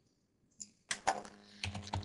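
Typing on a computer keyboard: a quick run of key clicks that starts about half a second in, as a word is typed into a text field.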